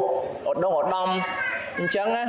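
Speech only: a man talking in Khmer in a sermon, his voice rising higher and more animated in the second half.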